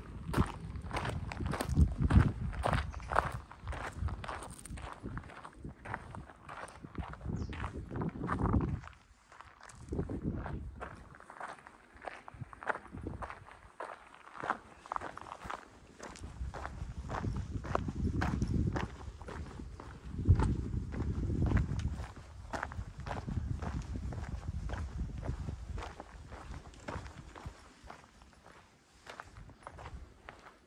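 Footsteps walking steadily on a gravel path, each step a crunch. Low gusts of wind buffet the microphone at times.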